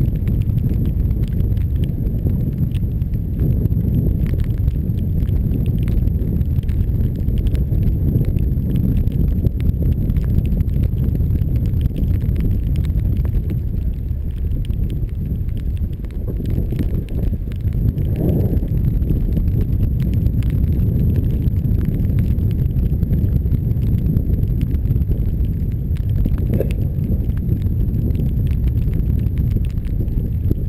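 Wind rumbling on the microphone of a camera riding on a moving bicycle, with tyre noise from a wet road: a steady low rumble.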